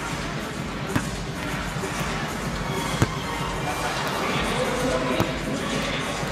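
Basketballs being shot in a three-point contest: three sharp knocks about two seconds apart as balls hit the rim and the hardwood, over the steady noise of an arena crowd.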